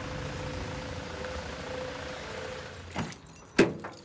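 Ford Transit van running steadily as it pulls up, with a faint steady whine over the engine noise, dying away about three seconds in. Two sharp clunks follow near the end, the second the louder.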